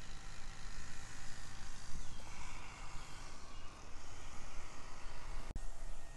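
Outdoor background noise with a low, uneven rumble and no distinct source, broken by one sharp click about five and a half seconds in.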